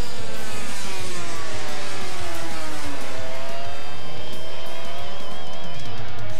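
250cc two-stroke Grand Prix racing motorcycles at racing speed. Their engine note falls in pitch over the first three seconds as the bikes come off the throttle for the corner, then climbs again as they accelerate away.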